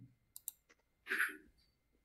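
A computer mouse clicking two or three times in quick succession, then a short breathy hiss about a second in.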